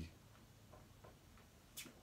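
Near silence: quiet room tone with a few faint ticks, and a short soft noise near the end.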